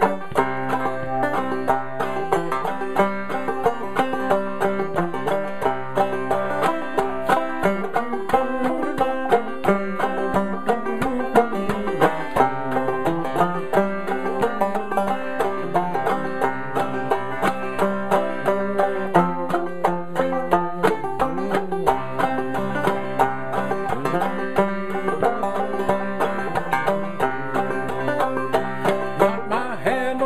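Solo clawhammer banjo playing a syncopated instrumental passage, picked notes running steadily through with no singing.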